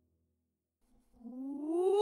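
The last of the song's music fades out to silence. About a second in, a single pitched sound with overtones swells up, rising steadily in pitch and growing loud, and is cut off as the track ends.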